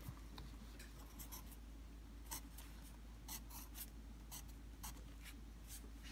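A child writing by hand on lined notebook paper: faint, irregular scratchy strokes of the writing tip on the page.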